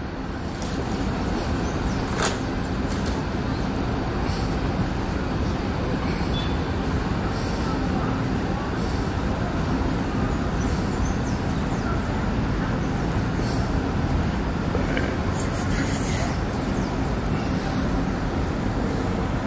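City street traffic with buses passing: a steady rumble of engines and tyres, with a few brief clicks.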